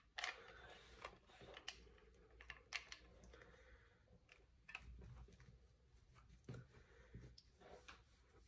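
Faint, irregular small clicks and crackles of hands pressing dried preserved moss onto a wreath frame.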